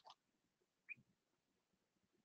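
Near silence, with one faint short high blip about a second in.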